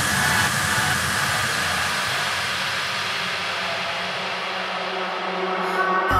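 Breakdown of an electronic trance track: a steady wash of white noise over faint held synth chords, with no beat. The bass thins away toward the end and the top closes off just before the end.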